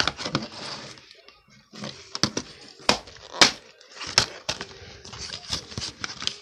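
Hands handling a plastic DVD case and its paper booklet: irregular sharp clicks and knocks, with paper rustling between them.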